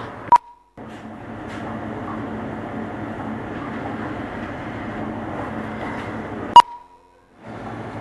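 Two short electronic beeps at the same single pitch, one just after the start and a louder one about six and a half seconds in. Each is followed by a brief cut to silence, with a steady hiss of background noise between them.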